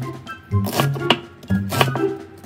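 Chef's knife chopping through cabbage onto a wooden cutting board, a few sharp strokes, over background music with a steady bass line.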